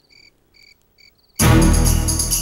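A few short, high chirps over near silence, then after about a second and a half loud music cuts in suddenly.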